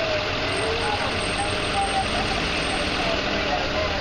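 A vehicle engine idling steadily, with faint voices of people talking close by.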